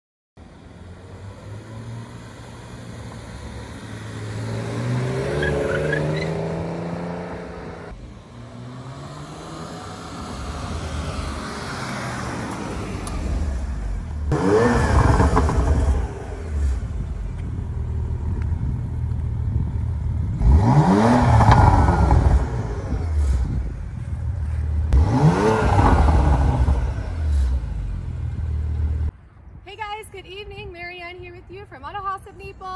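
Porsche Macan S's 3.0-litre twin-turbo V6 idling and being revved: one slower climb in revs early on, then three sharp blips of the throttle, each a quick rising surge through the exhaust and the loudest moments. The sound cuts off suddenly shortly before the end.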